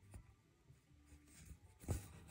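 Embroidery needle and six-strand cotton thread passing through Osnaburg cloth stretched in a wooden hoop: faint scratchy rustles as the stitch is made, with a louder brief scrape near the end as the thread is drawn through.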